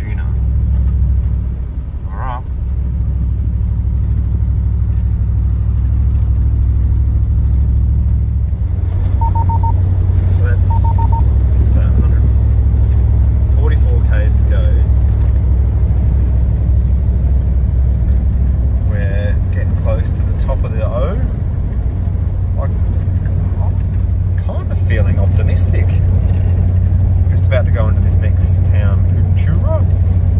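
Inside the cabin of a Nissan Patrol Y62 at highway speed: a steady low engine and road drone that shifts in pitch a couple of times. Two short electronic beeps come around ten seconds in.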